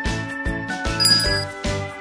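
Background music with a steady beat, and a bright bell-like ding about a second in.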